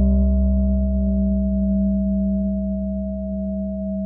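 Solfeggio meditation music: a steady 639 Hz tone held over a deep, ringing struck note that slowly fades, with a new note entering at the very end.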